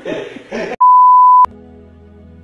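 A loud, steady bleep tone lasting about two-thirds of a second, starting nearly a second in and cutting off suddenly. Before it comes the tail of a voice; after it, a quiet held musical chord begins.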